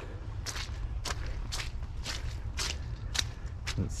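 Footsteps on a muddy dirt track, an even pace of about two steps a second, over a steady low rumble.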